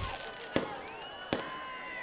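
Two sharp firecracker bangs a little under a second apart, over the background noise of a large crowd with a few faint whistles.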